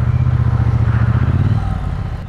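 Triumph T120 Bonneville's 1200 cc parallel-twin engine and exhaust running steadily under way, its note dipping lower about one and a half seconds in.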